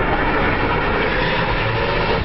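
Two jet engines of a single-seat F/A-18 Hornet running loud and steady as the jet lands on an aircraft carrier deck to catch the arresting cable.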